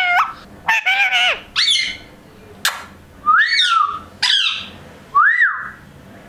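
Indian ringneck parrot giving a string of about five short whistled calls that glide in pitch, the later ones rising and then falling. There is a single sharp click about two and a half seconds in.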